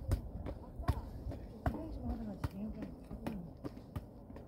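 An anyball, a ball on a cord, swung in rhythm so that it strikes the rock of the trail: a series of sharp thuds, the loud ones about every 0.8 seconds.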